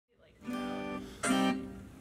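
An acoustic guitar sounding two chords, the first about half a second in and the second, louder, just over a second in, each ringing on and fading.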